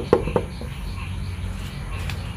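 Two short knocks of a steel hammer and its handle being set down on a wooden workbench, about a fifth of a second apart near the start, over a steady low hum.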